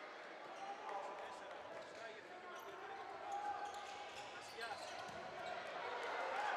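Handball bouncing on an indoor court during play, amid players' shouts and crowd voices in a large hall.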